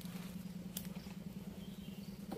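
Husqvarna 3120 XP chainsaw engine running steadily at low speed, an even low drone, with a few light ticks and one sharp tick under a second in.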